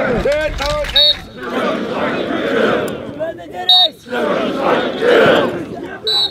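Group of Marine recruits yelling battle cries together in loud repeated bursts during bayonet drill. A single man's shouted commands stand out in the first second and again briefly past the three-second mark.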